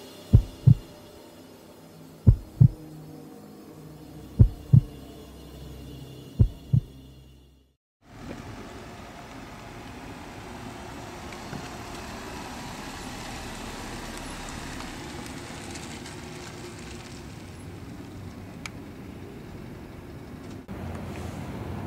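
A heartbeat sound effect: four paired lub-dub thumps about two seconds apart, fading. After a short gap about eight seconds in, steady outdoor noise takes over as a car drives slowly through a parking lot.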